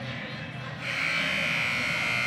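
Basketball arena buzzer horn sounding about a second in, a steady buzzing tone that holds for close to two seconds.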